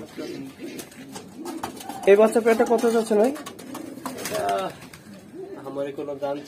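Giribaz domestic pigeons cooing, a low warbling coo, with a louder stretch of a man's voice from about two seconds in.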